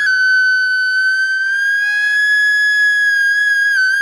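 Backing-track music: a single high flute note held for about four seconds, wavering slightly in pitch, with the lower accompaniment dropping out under it within the first second.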